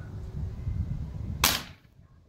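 Xisico XS28M 5.5 mm air rifle firing a single shot, one sharp report about one and a half seconds in.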